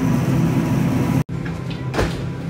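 A loud, low steady rumble with a hum in it, broken by a sudden brief dropout a little past one second in.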